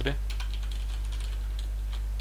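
Typing on a computer keyboard: a quick run of light key clicks over a steady low hum.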